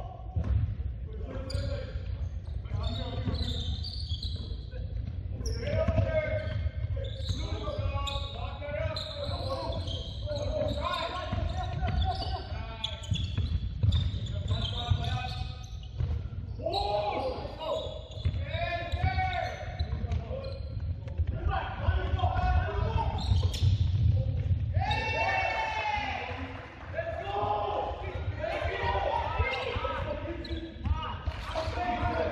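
Basketball bouncing on a hardwood gym floor during play, with players and coaches shouting and calling out throughout, echoing in the large gym.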